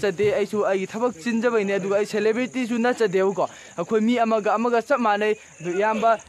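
A man talking close to the microphone in a language the recogniser did not catch, with a steady high-pitched insect drone behind him.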